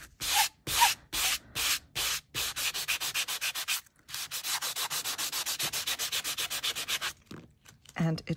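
Nail buffer block rubbing back and forth over embossed 70 micron aluminium metal tape, buffing the colour off the raised pattern. There are a few slower strokes first, then quick even strokes with a brief pause about halfway, stopping shortly before the end.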